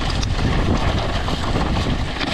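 Mountain bike riding fast down a loose, rocky dirt trail: wind rushing over the microphone, with tyres crunching over gravel and small clattering knocks as the bike hits bumps.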